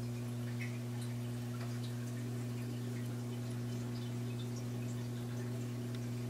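Steady low electrical hum with faint, scattered drips and trickles of water from a running reef aquarium.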